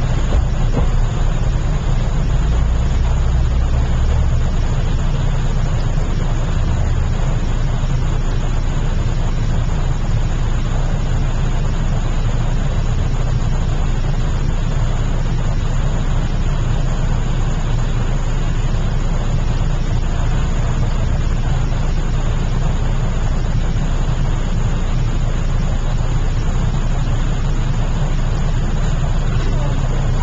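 Steady low hum with an even hiss over it, the background noise of an empty room; a deeper tone swells briefly a couple of seconds in.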